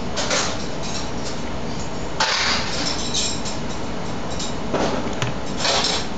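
Steady machine-like running noise with several short hisses.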